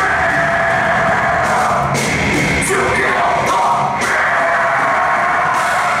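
Live heavy metal band playing loud, electric guitar with a vocalist yelling over it.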